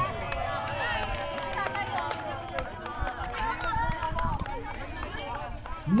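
Several people talking and calling out at once, a low steady chatter of voices quieter than the announcer, with a few scattered sharp clicks.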